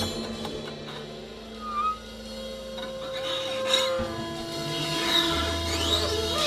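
Sparse, quiet free-jazz improvisation: a few long held notes, a short wavering phrase about two seconds in, and a rising glide later, with lower sustained tones coming in about four seconds in.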